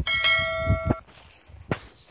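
Notification-bell sound effect: a single struck bell tone with several steady overtones, held about a second and then cut off abruptly.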